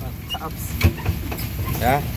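Tour jeep's engine running with a steady low rumble, and one sharp knock about a second in.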